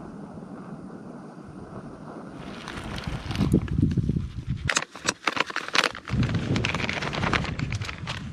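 Wind buffeting the microphone in gusts. About five seconds in comes a quick run of sharp clicks and clatter from a metal camp cook pot and its lid being handled with a pot gripper.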